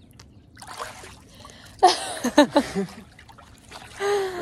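Pool water sloshing and splashing around a swimmer, with a short burst of laughter about two seconds in.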